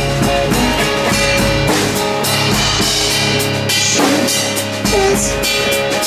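Live rock band playing an instrumental passage: drum kit with bass drum and cymbals under electric guitars.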